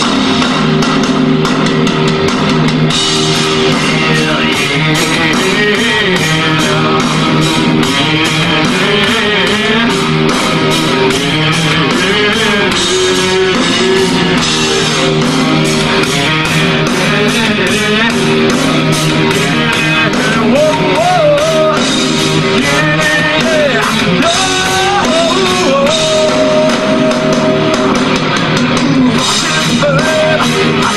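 Rock band playing with electric guitars and drum kit: a loud, steady full-band groove with regular drum hits. A higher, wavering melody line comes in about two-thirds of the way through.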